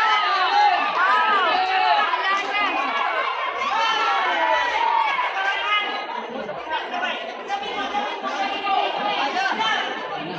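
Boxing crowd in a large hall, many voices chattering and shouting over one another. It is a little louder in the first few seconds.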